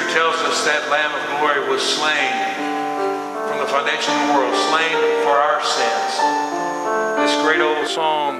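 Piano playing slow, sustained hymn chords, with a man's voice speaking over it at intervals.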